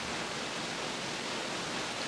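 Steady, even hiss of background noise with no voice.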